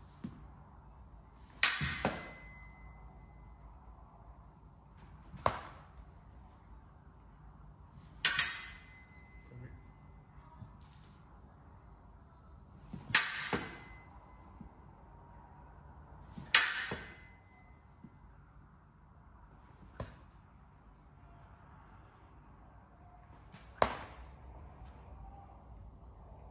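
Steel fencing blades striking together during a blade-preparation drill: about seven sharp metallic clashes a few seconds apart, several leaving a brief thin ring, one near the end fainter than the rest.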